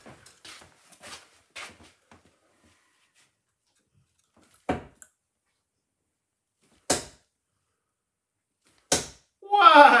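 Three steel-tip darts, 27 g Datadart Red Demon tungsten barrels, thrown one at a time and hitting a bristle dartboard: three short sharp thuds about two seconds apart, the first a little under five seconds in.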